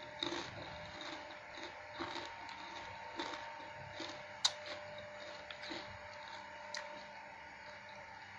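Close-miked chewing of a mouthful of vegetables: soft, moist crunching at about three chews a second, with one sharp click about halfway through. A faint steady hum sits underneath.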